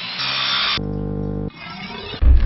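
A spinning circular cutting blade whining and grinding briefly in the first half second or so, followed by a held pitched tone of about a second, over music.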